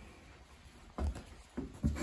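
A single dull thump about a second in, followed by a couple of fainter handling knocks: a tool or the camera being handled on a wooden workbench.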